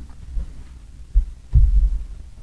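Dull low thumps picked up by a lectern microphone as a man turns and moves away from the wooden lectern: a short one about a second in and a heavier one near the end.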